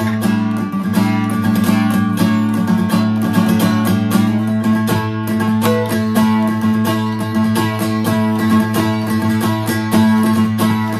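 Acoustic guitar played with a pick in fast, continuous strumming, the chords ringing over a low note that is held throughout.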